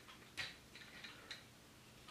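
A few faint clicks of hard plastic toy parts being handled and moved on a transforming robot figure, the clearest about half a second in.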